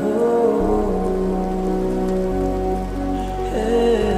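Slowed, reverb-heavy Tamil lofi music with held notes over a rain sound effect. A deep bass comes in about half a second in and grows stronger a couple of seconds later.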